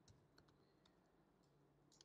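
Near silence with a few faint, scattered computer keyboard keystrokes, clustering near the end.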